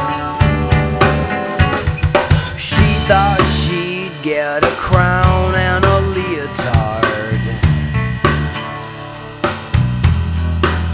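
Rock band playing a passage with no lyrics: a drum-kit beat on bass drum and snare over a steady bass line, with a wavering melodic line bending up and down in the middle of the passage.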